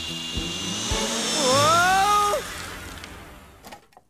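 Cartoon cordless power drill whirring with a steady high whine into a wall. About a second in it gives way to a louder pitched sound that rises and then holds, and everything fades out before the end.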